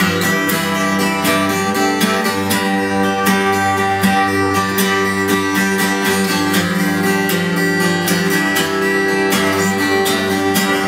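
Steel-string acoustic guitar strummed steadily in an instrumental passage, the chords ringing on under the strokes.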